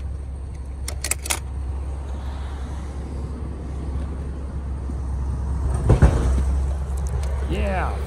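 A few sharp clicks about a second in as die-cast toy cars clink against each other in a plastic bucket, over a steady low rumble, with a single thump near six seconds. A voice starts just before the end.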